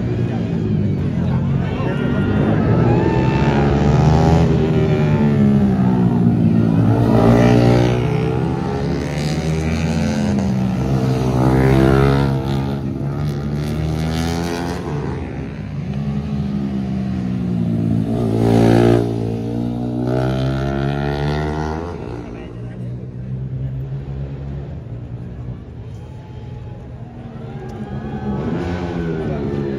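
Racing motorcycles lapping a tight circuit, their engines revving up and falling away through the gears as they pass. The loudest passes come about 7, 12 and 19 seconds in, and the sound fades lower near the end.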